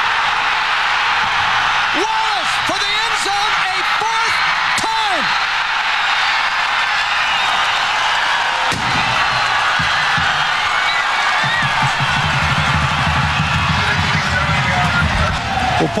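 Large stadium crowd cheering steadily, with shouted calls rising and falling a few seconds in. Music plays under the cheering in the second half.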